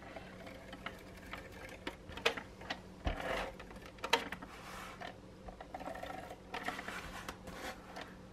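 Double-sided tape being run off a handheld Scotch tape dispenser along the edge of a sheet of paper: several short strokes of tape unrolling, with small clicks and paper handling between them.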